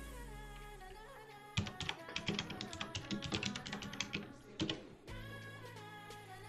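Typing on a computer keyboard: a quick run of keystrokes starting about a second and a half in and stopping about a second before the end, with faint background music underneath.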